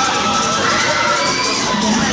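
Several riders screaming on a fairground ride: long held shrieks from a few voices at once, sliding slowly in pitch.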